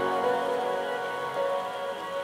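Electronic background music ending on sustained synth chords over a steady hiss, slowly fading out.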